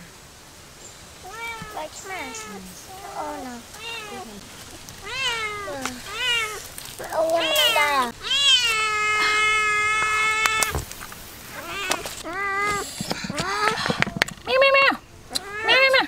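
Domestic cat meowing over and over in short calls that rise and fall. About eight seconds in it gives one long, level call lasting a few seconds that cuts off suddenly, and the meows come faster near the end.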